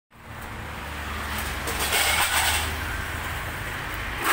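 A motor vehicle's engine running with a steady low hum. The noise swells to its loudest around two seconds in, then eases.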